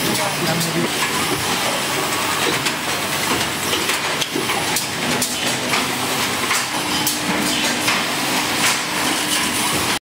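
Bag-in-box wine packing line running: a steady hiss of machinery with many light clicks and knocks from the carton conveyors and packing machine, and a steady hum coming in about seven seconds in.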